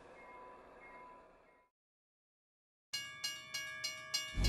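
A railroad crossing bell ringing in quick repeated strikes, about three a second, starting about three seconds in after a brief fade to silence.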